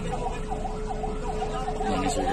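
A siren sounding in a fast yelp, its pitch swooping down and up about three times a second over a steady tone.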